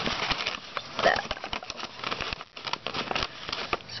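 Paper gift bags and plastic-wrapped snacks rustling and crinkling as they are handled and packed, an irregular crackly noise with a short lull about two and a half seconds in.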